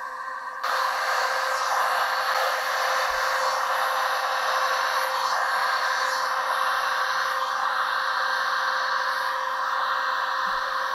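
Handheld electric heat gun blowing hot air over freshly poured epoxy, a steady rush with a faint steady hum, stepping up in loudness about half a second in. The epoxy is being heated to thin it and let the metallic pigments flow into veins.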